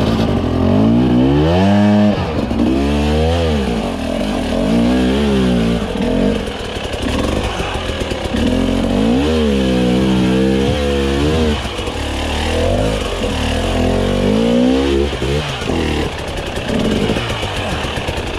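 Husqvarna TE300i two-stroke enduro engine working under load on a rocky climb, revved in a series of throttle bursts that rise and fall in pitch about six times, with lower running between them.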